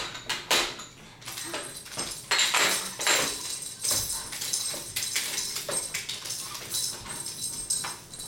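Babies' toys knocking and rattling against plastic high-chair trays: irregular clattering knocks and rattles throughout.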